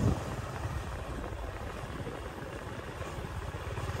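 Motorbike ridden slowly, giving a steady low rumble of engine and road noise heard from the rider's seat.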